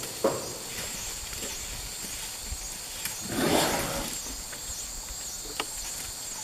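Steady high-pitched insect chorus, with a breathy whoosh lasting under a second about three and a half seconds in. A last plucked guitar note ends right at the start.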